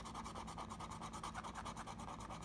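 A scratch-off lottery ticket being scraped with a plastic scratching tool, in quick, even back-and-forth strokes that rub off the coating.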